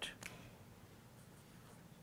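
Faint scratching of a pen on paper, a few short strokes, as lines are drawn in red.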